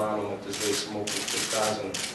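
A man speaking Slovenian into microphones in a small room, with patches of sharp high hissing noise between his words.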